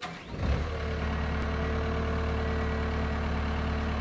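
Caterpillar 907H2 compact wheel loader's diesel engine starting: it comes in suddenly, catches within about half a second and settles to a steady idle, with a faint steady whine over it.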